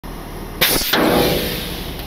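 Two sudden loud bursts of noise from a slip while working on a tow truck's hookup: a short one, then a longer one that fades over about half a second.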